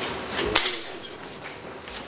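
A few short clicks and knocks from a laptop and its plug-in gear being handled at a lectern: two or three in the first half second and a fainter one near the end, over quiet room tone.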